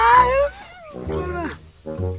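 A young boy bawling loudly: a long wail rising in pitch that breaks off about half a second in, then a shorter wail falling in pitch about a second and a half in.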